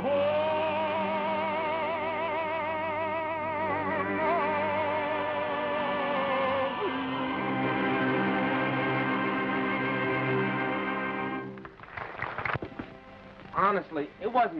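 A male singer holds the long final note of a ballad with a wide vibrato over instrumental accompaniment; the voice gives way to a held closing chord, which stops about twelve seconds in. Short bits of speech follow near the end.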